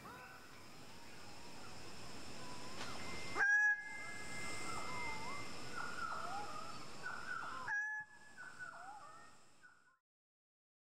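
Male greater bird-of-paradise calling repeatedly, each call dipping and rising again in pitch, over a steady forest background; the calls fade out near the end.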